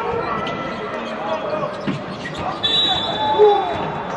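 Basketball game in an arena: a ball bouncing on the hardwood, sharp knocks and voices calling across the hall, then a referee's whistle blowing one long steady blast near the end as a player goes down, a foul being called.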